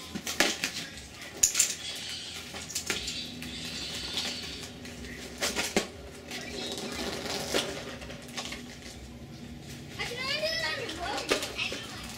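A few sharp clicks and knocks at uneven gaps over quiet outdoor background, with a short burst of a voice near the end.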